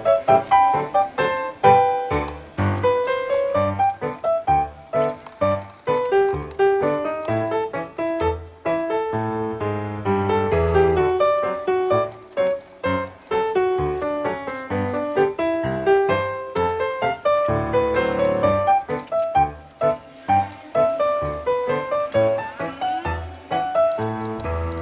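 Background music: a melody of quick, distinct notes over a low bass line, steady throughout.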